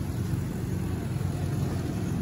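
Street traffic: the engines of passing motorcycles and a truck, a steady low engine noise.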